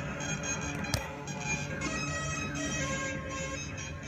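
Modular synthesizer patch playing a dense, droning mass of overlapping pitched tones with a wavering lead line. The lead comes from a Doepfer A-196 phase-locked loop tracking a frequency-divided signal, smeared by an Electro-Harmonix Memory Man analog delay. A single sharp click sounds about a second in.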